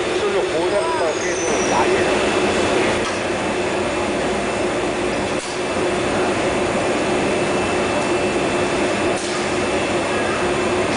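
Steady industrial hum and rushing noise of a glassblowing hall's furnaces and blowers, with faint voices in the background near the start.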